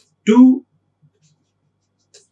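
Faint light taps of a stylus writing on a pen tablet, heard about a second in after one spoken word.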